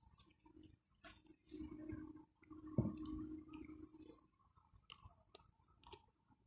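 A person chewing a mouthful of roast chicken, with small wet mouth clicks and smacks and one sharper click about three seconds in. Low steady humming comes in stretches over the first four seconds.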